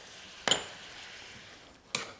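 A small ceramic ramekin clinks once, sharply and with a short ring, about half a second in, with a faint sizzle from the frying pan of shallots and mustard behind it. A second short click comes near the end.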